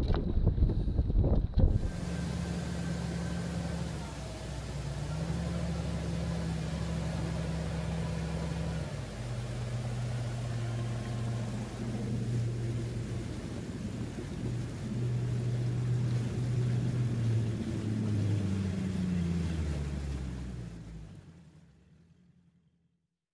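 Mercury Pro XS outboard motor running at speed, pushing the boat along with water rushing and splashing in its wake. The engine note shifts in pitch a few times and fades out near the end.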